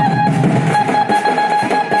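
Loud Koraputia Desia dhemsa band music: a held, wavering melody line over a busy drum beat.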